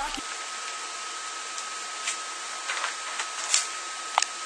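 Steady hiss with a thin, steady high tone and a few faint ticks: the background noise of a quiet recording, with no clear speech or music.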